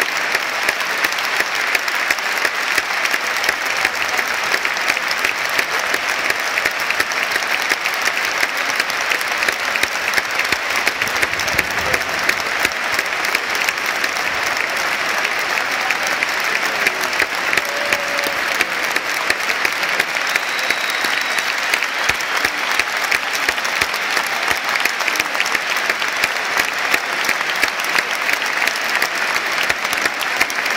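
Large stadium crowd applauding, a dense, steady wash of many thousands of hands clapping that holds evenly throughout.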